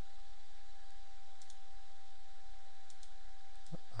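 A few faint computer mouse clicks over a steady background hiss with a thin, constant whine.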